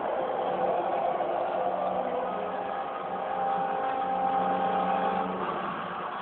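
Anime episode's soundtrack playing through a television speaker and picked up by a phone: a steady, noisy sound with several notes held for a few seconds, fading slightly near the end.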